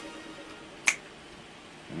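The last sung note dies away, then a single sharp finger snap about a second in.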